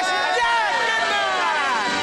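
A person's long, drawn-out cheering shout, high-pitched and sliding slowly downward in pitch.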